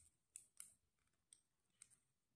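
Faint, irregular clicks of plastic knitting needles tapping against each other as stitches are worked, two of them a little louder about half a second in.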